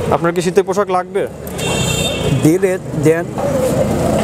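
A voice speaking in two short bursts over a steady bed of road traffic noise, with a brief thin high-pitched tone between them.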